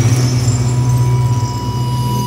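A steady low drone from the sound design of a film distributor's logo, held without a break, with a faint thin high tone joining about halfway through.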